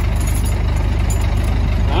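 Heavy truck's diesel engine idling steadily.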